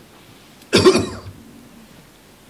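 A man coughing once into a handheld microphone, about a second in: a single short, sharp cough that fades quickly.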